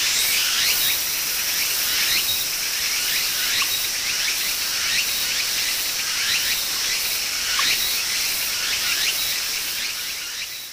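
Insects chirring in a steady high-pitched chorus, with short falling chirps recurring every second or two.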